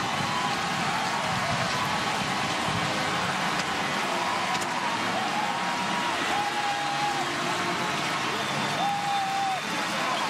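Stadium crowd cheering steadily after a championship-winning final out. Several short, steady whistle-like tones sound over it in the second half.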